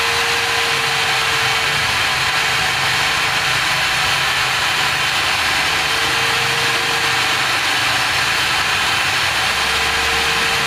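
Electric angle grinder running steadily while a steel engine rocker arm is pressed against its spinning wheel to clean it: a constant motor whine under a dense scraping hiss.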